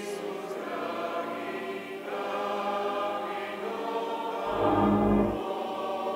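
A church choir singing a sacred piece with long held notes, ringing in a reverberant church. About four and a half seconds in, a loud low rumble lasting about a second joins the singing.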